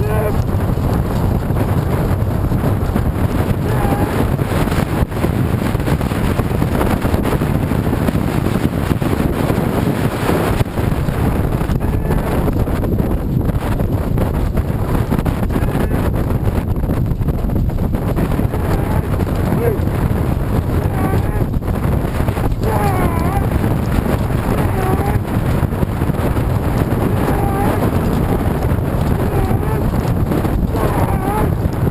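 Wind rushing steadily over the microphone of a camera on a horse-drawn chuckwagon at full gallop, with the deep rumble of the running team and wagon underneath. Brief voice calls cut through now and then, mostly in the second half.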